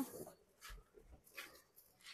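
Mostly quiet, with a few faint soft bumps and rustles of latex balloons being handled and pushed together.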